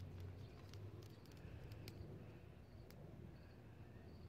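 Near silence: faint outdoor ambience with a few short high chirps and scattered small ticks.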